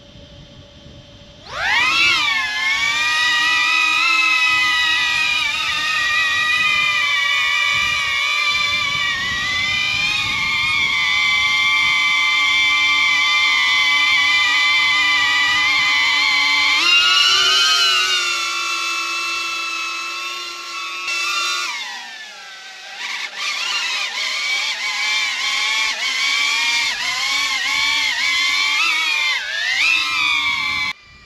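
DJI Avata drone on Master Airscrew four-blade propellers spooling up sharply for takeoff about a second and a half in, then a loud, high-pitched motor and propeller whine. The pitch holds steady, rises as the drone climbs later on, dips, and rises again near the end.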